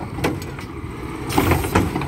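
Garbage truck's Curotto-Can automated arm gripping a wheeled trash cart and hoisting it up, over the steady rumble of the truck's diesel engine, with a few clanks about halfway through.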